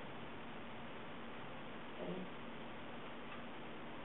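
Quiet room tone: a steady low hiss, with one brief faint sound about halfway through.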